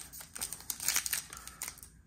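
Foil wrapper of a trading card pack crinkling and crackling as it is torn open by hand, in irregular crackles.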